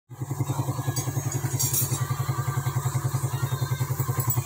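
The single-cylinder four-stroke engine of a 2005 Suzuki Satria FU motorcycle running at a steady idle, an even, rapid putter of about sixteen beats a second.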